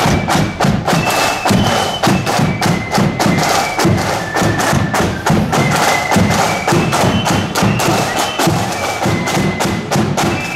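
A marching flute band playing live in the street: a high flute melody over loud, steady drumbeats.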